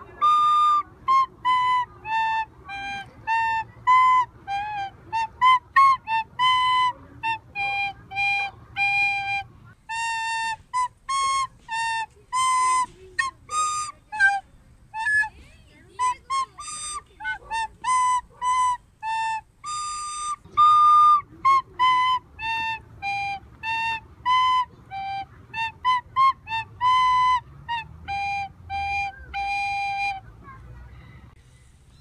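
Plastic soprano recorder played solo by a child: a simple melody of separate notes, most short and a few held longer, ending on a held note.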